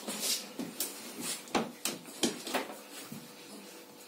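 A wet Jack Russell terrier rubbing her head and body along a cloth towel to dry herself after a bath: about ten short, irregular scuffs and snuffles of fur and nose against the cloth.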